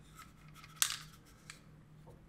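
A small ball clicking and rattling inside a layered wooden and clear-plastic maze puzzle as it is tilted, with one sharp click a little under a second in and a few fainter ticks around it.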